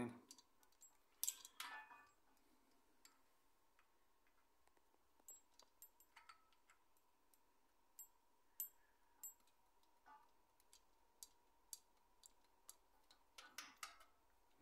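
Faint, scattered clicks and light metallic ticks of a steel timing chain and its sprocket being handled and worked into place by hand on a Nissan VQ35DE V6, with near silence between them. A faint steady high hum runs underneath.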